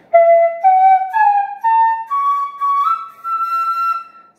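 Bamboo Carnatic flute playing the ascending scale (arohanam) of raga Sri Ranjani, S R2 G1 M1 D2 N1 S. Seven clear notes rise step by step, about half a second each, and the top Sa is held longest.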